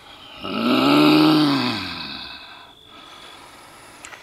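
A man's long, drawn-out groan, its pitch rising and then falling over about two seconds, like a healer's ritual vocalisation.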